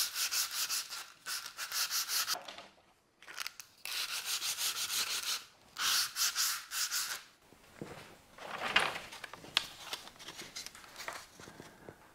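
Hand sanding: a thin wooden strip rubbed back and forth in a roll of 150-grit sandpaper to break its edges. The strokes come quickly, about four a second, in runs with short pauses, and are fainter in the last few seconds.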